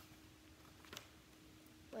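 Near silence: room tone with a faint steady hum and a single soft click about halfway through.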